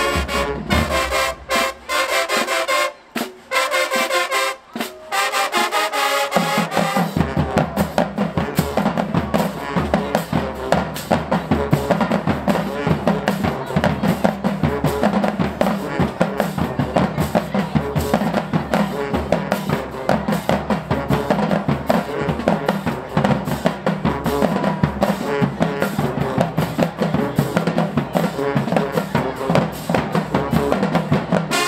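Marching band playing: brass chords cut by a few short stops in the first several seconds, then a fast, steady drum cadence with snare and bass drums carries through the rest.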